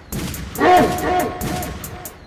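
Crunk-style hip hop instrumental beat: a pitched riff of bending notes that comes back about every second and a half, over a steady bass and regular hi-hat ticks.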